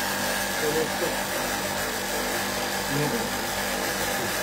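Air conditioner's compressor and fan running with a steady hum while it is charged with refrigerant gas.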